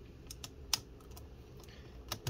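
A few light plastic clicks and taps as hands handle the opened laptop's chassis and battery area, the sharpest about three quarters of a second in.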